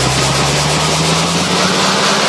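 Electronic dance music build-up: a low synth tone climbing steadily in pitch under a dense wash of white-noise sweep, a riser leading toward a drop.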